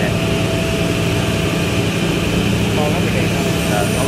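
Woodworking machinery running in the workshop, a loud steady drone with constant low hum tones and a steady higher whine.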